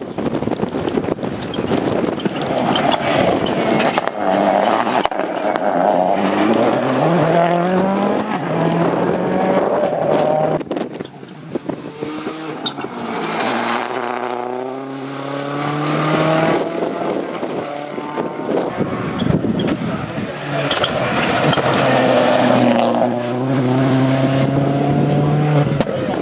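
Ford Focus WRC rally car's turbocharged four-cylinder engine at full throttle, revving up through the gears over and over, the pitch climbing and dropping back at each shift.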